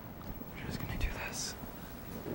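Faint whispered voices, with a soft thump about a second in.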